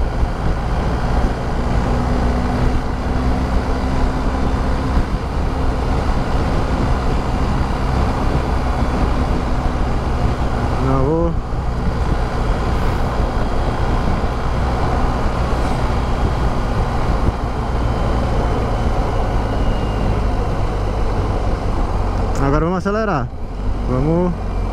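BMW R1250 GS Adventure's 1254 cc boxer twin running steadily at highway cruising speed, heard from the rider's seat under heavy wind rush. Near the end the bike slows as it is shifted down a gear.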